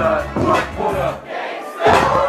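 Loud hip-hop DJ mix played over a club sound system with the crowd shouting along. A bit past a second in the bass cuts out for about half a second, then the beat drops back in with a hard hit just before the end.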